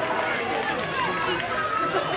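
Distant voices of players and spectators calling out and talking across an open football ground.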